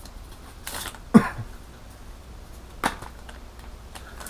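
Hands handling an air freshener's retail packet: a brief rustle, then a short throaty cough-like sound about a second in, and a sharp click of the packaging near three seconds.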